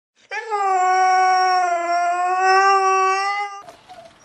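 A Siberian husky howling: one long, steady howl of about three seconds that cuts off abruptly.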